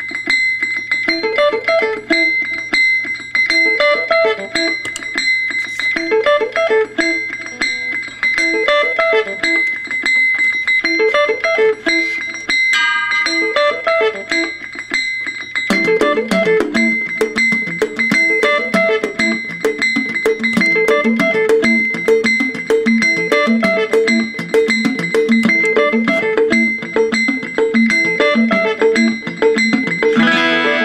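Heritage David Becker model archtop electric guitar playing solo jazz: a short melodic figure repeating over and over, with a steady high ringing tone underneath. About halfway through, a fuller, lower part joins and the playing gets denser.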